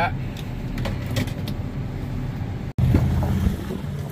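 Steady machinery rumble of a combine unloading shelled corn through its auger into a grain cart running alongside. About two-thirds of the way through it cuts off abruptly and a louder low rumble takes over.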